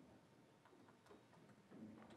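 Near silence: room tone with a few faint, short ticks scattered through it.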